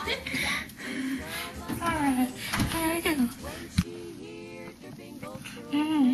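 A Furby toy's high-pitched electronic voice chattering in short, sing-song phrases, with one sharp click about two-thirds of the way through.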